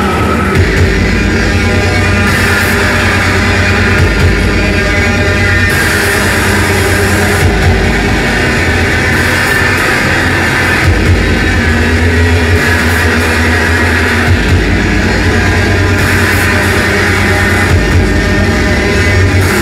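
Loud live electronic noise music: a dense, distorted wash across the whole range over a heavy low end, with no breaks.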